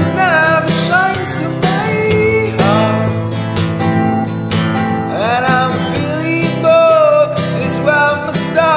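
Acoustic guitar strummed in steady chords while a voice sings a sliding, held melody over it.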